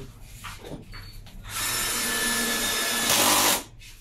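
A power tool runs for about two seconds, starting about a second and a half in. It grows louder for its last half second, then stops abruptly.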